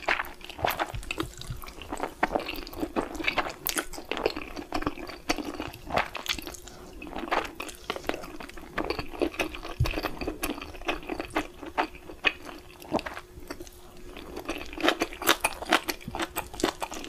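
Close-miked slurping and chewing of black-sauce instant noodles: a steady run of irregular wet smacks and squishes, several a second.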